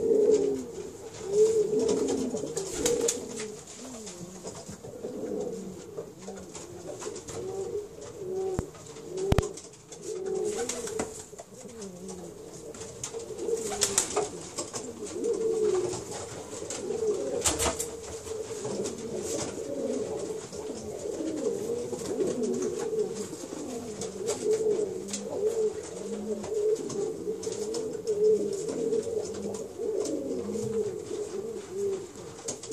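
A grey pouter pigeon cock cooing over and over with its crop inflated, a continuous low, wavering coo.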